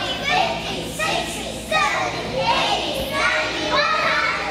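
Speech only: young children's voices, one child speaking into a microphone in a large hall.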